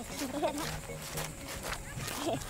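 Fast-forwarded audio: voices sped up into a squeaky, high-pitched chatter, with a few sharp crunches of footsteps on beach pebbles.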